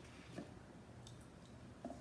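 Near silence with faint handling noise: a few soft taps and rustles as a small cardboard watch box is handled.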